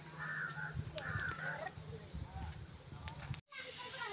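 Quiet outdoor background with two short wavering calls. About three and a half seconds in, the sound cuts out for an instant and a loud, steady hiss begins.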